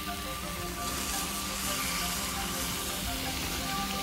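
Bass fillets sizzling in butter sauce on a grill over hot coals, the sizzle growing louder about a second in. Soft background music with held tones plays underneath.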